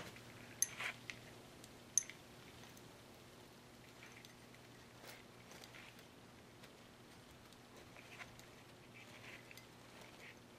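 Faint handling sounds of a strand of pearl beads being wound around a wine glass stem: a few small clicks in the first two seconds, then soft rustles, over a low steady hum.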